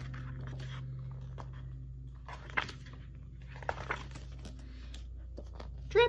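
Paper rustling and handling as a hardcover picture book is opened from its cover to the first page spread, a few short rustles, the loudest about two and a half seconds in, over a steady low hum.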